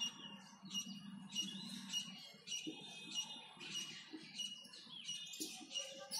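Marker squeaking on a whiteboard while words are handwritten: a string of short, faint, high-pitched squeaks, one with each pen stroke.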